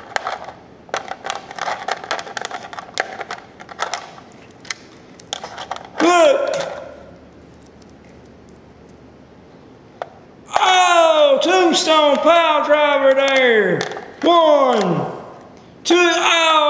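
Small plastic action figures clicking and clacking against each other and a toy wrestling ring as a hand moves them. Then come high, falling vocal cries: one about six seconds in, and a quick run of them from about ten seconds in.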